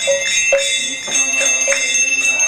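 Brass hand bell ringing without a break during an arati offering, joined by the strokes of a mridanga drum about every half second.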